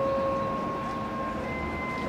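Railway coaches rolling slowly round a curve, their wheels giving a steady squeal that fades out in the second half, with a brief higher squeal near the end, over a low engine rumble.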